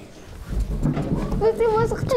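A child's high voice in held, wavering sing-song notes, starting about halfway in after a quiet moment.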